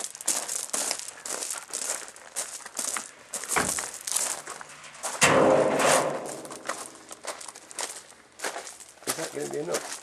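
Black steel oil drum being rolled on its rim and walked across gravel, with steady crunching and scraping. About five seconds in comes the loudest sound, a ringing clang as the drum is set down among the others, and a shorter ring follows near the end.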